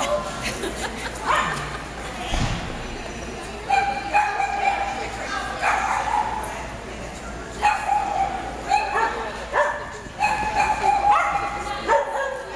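A dog barking and yipping repeatedly in bouts, its calls held and high-pitched, starting about four seconds in and recurring every second or two.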